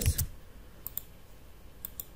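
About four sharp, separate clicks from a computer keyboard and mouse as text is selected and deleted in an editor.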